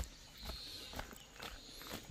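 Footsteps on a dirt and stone footpath, about two steps a second, faint, with the first step the loudest.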